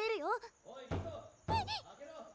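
Anime episode audio: a girl's high voice finishes a line, then two heavy knocks on a door, about a second in and half a second apart, someone banging to be let in.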